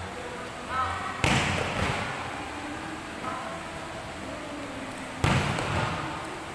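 Two loud smacks of a volleyball being struck hard, about four seconds apart, each ringing on in the echo of a large hall.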